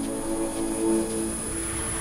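Logo sting sound effect for a station ident: a swelling drone with several held low tones and a thin high whine, growing slowly louder and cutting off suddenly at the very end.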